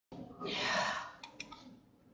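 A woman's audible sigh, a breath out into the microphone lasting about half a second, followed by three faint small clicks.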